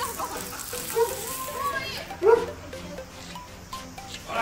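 Voices of people playing outdoors, calling out, with one louder rising cry about two seconds in.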